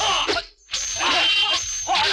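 Sword-fight sound effects: yelping shouts from the fighters, then after a brief sharp break about half a second in, swishing and clashing blades with a thin high metallic ring.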